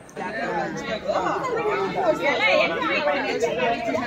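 Group of people chatting, several voices talking over one another; it starts abruptly just after the start.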